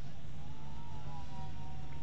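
Faint whine of a brushed-motor micro FPV quadcopter in fast flight, its pitch drifting up and down with throttle, over a steady low hum.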